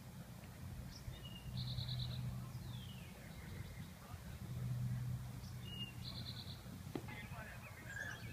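A songbird singing the same short phrase twice, about four seconds apart: a brief note followed by a quick trill. A low hum swells and fades underneath twice, and a single click sounds near the end.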